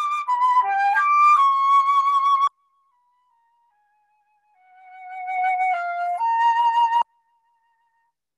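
Flute playing a slow, legato phrase. A few loud sustained notes step downward and back up before breaking off about two and a half seconds in, followed by very faint soft notes. A second phrase then swells in loudness and cuts off abruptly about seven seconds in.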